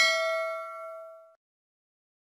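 A single bell-like notification ding that rings out and fades away within about a second and a half.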